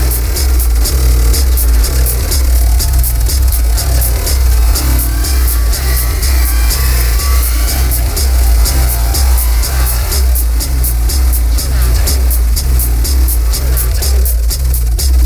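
Live electronic techno/IDM music: a deep bass pulse repeating about twice a second under a steady run of high ticks, with shifting electronic textures in the middle range.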